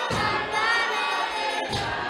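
A congregation singing together as a choir of many voices, a gospel song, with a low thump at the start and another near the end.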